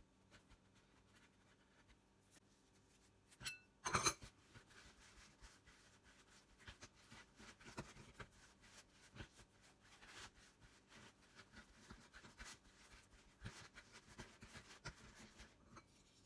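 Mostly quiet: faint rustling and light patting of hands shaping pandesal dough and rolling it in breadcrumbs on a cutting board, with a louder brief clatter about four seconds in.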